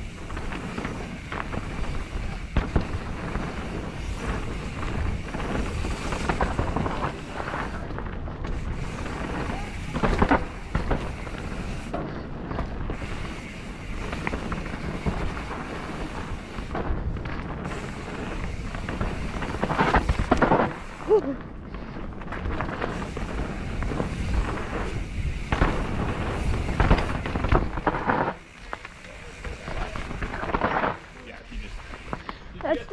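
Mountain bike ridden fast down a dirt singletrack, heard from a mounted action camera: wind buffeting the microphone, tyres on dirt and the bike rattling over roots and bumps, with sharp knocks from harder hits about ten and twenty seconds in. It quietens near the end as the bike slows.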